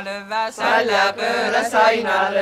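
Voices singing an Estonian regilaul (runic song) in call-and-response: a single lead voice ends its line, and several voices join in together about half a second in.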